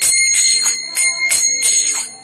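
A hand bell rung rapidly and continuously, its high ringing tone held between strokes, with sharp strikes about three times a second.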